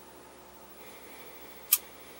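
A single sharp click of a light switch near the end, the room lights going off, over a faint steady hiss.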